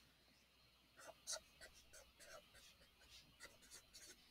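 Faint scratching of a pen writing on graph paper in a spiral notebook: a series of short strokes as the numbers and symbols of an equation are written out.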